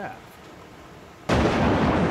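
A sudden loud burst of rushing noise about a second in, which carries on: an edited boom-and-whoosh transition sound effect for an animated countdown graphic.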